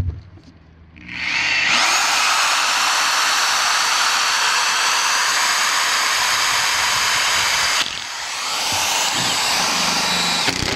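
Power drill boring through a rough-cut oak trailer deck board. The motor spins up with a rising whine about a second in, runs steadily under load, eases off briefly near the end, then spins back up.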